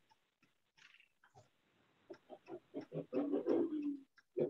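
About two seconds of near silence, then a faint, muffled voice coming over a narrow-band call line in short, choppy fragments with no clear words, as if the connection is breaking up.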